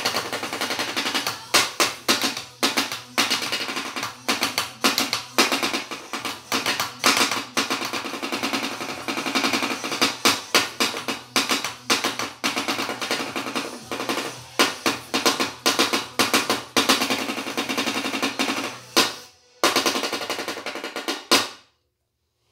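Drumsticks beating very fast on a box used as a drum, a dense continuous roll of strikes. It breaks off briefly near the end, resumes, then stops abruptly.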